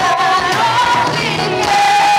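Live gospel singing: a woman sings lead with backing singers, the voices holding long notes with vibrato.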